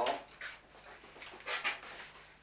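A small pet animal making two quick breathy sounds about one and a half seconds in, over low room tone.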